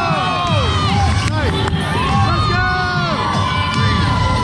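Crowd cheering and yelling, many high voices holding long yells that fall away at their ends, over loud music.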